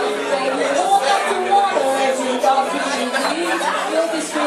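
Chatter of several voices talking at once in a large room.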